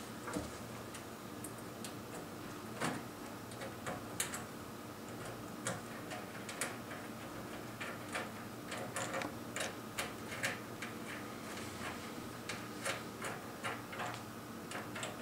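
Irregular small metallic clicks and taps of a 3 mm Allen key working the screws of a flying lead clamp, over a faint steady hum.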